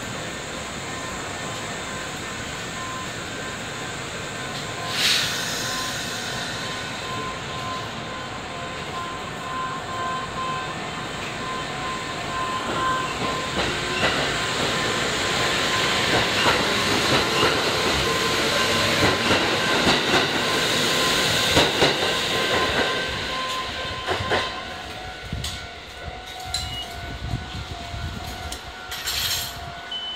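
Kintetsu electric train at the station: a short hiss of air about five seconds in, then its running noise with a steady electric whine builds up, peaks and fades away as it pulls out of the platform.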